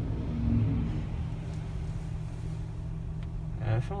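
Car engine running, a steady low rumble heard from inside the cabin, with a brief low vocal hum about half a second in.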